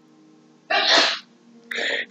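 A woman's single short, sharp burst of breath about a second in, loud and noisy, with no voiced pitch.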